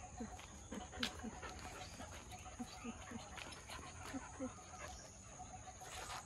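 Dogs making faint, short, low whimpering calls in little clusters of two or three, with scattered faint clicks.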